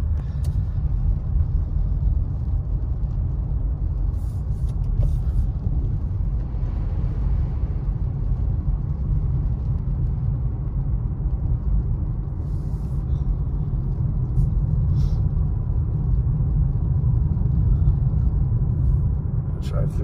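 Steady low road and engine rumble heard inside a car's cabin while driving on wet pavement, with a few faint ticks.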